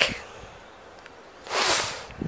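Faint outdoor background, then about a second and a half in a short soft breathy hiss lasting about half a second: a breath close to the microphone just before speaking resumes.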